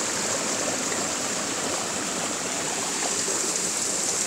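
Water rushing steadily in a nearby stream, an even hiss with no breaks.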